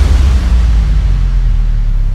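A deep, steady bass rumble, the long sustained boom that ends a cinematic intro's music.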